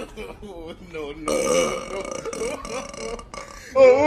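A woman burping: a few short belches, then a louder, longer one near the end.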